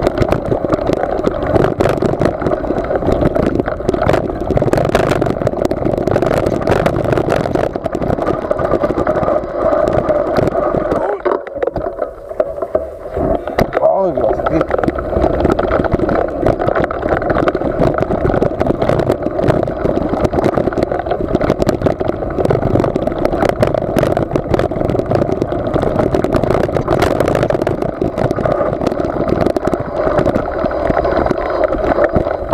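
Wind rushing over the microphone during a fast mountain-bike descent, with rattles and knocks from the bike over bumps in the dirt trail. The rush eases briefly about twelve seconds in.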